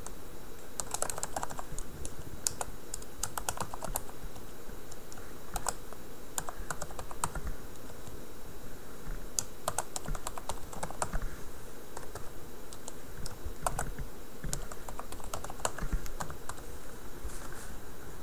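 Typing on a computer keyboard: irregular runs of quick keystrokes with short pauses between them.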